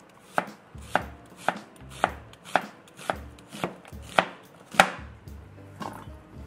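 Chef's knife slicing a white onion into half-rings on a wooden cutting board, the blade knocking on the board in a steady rhythm of about two strokes a second.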